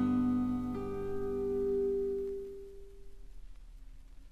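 Final acoustic guitar chords of the song struck and left to ring, fading out over about three seconds into faint record surface noise.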